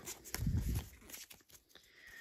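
A freshly opened Pokémon booster pack's cards being slid and shuffled by hand: rustling card stock with many small clicks, and a duller handling bump about half a second in.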